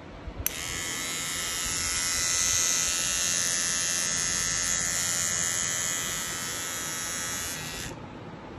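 Battery-powered rotating-head electric toothbrush switched on about half a second in with a click, its small motor running with a steady high-pitched whine for about seven seconds, then switched off just before the end.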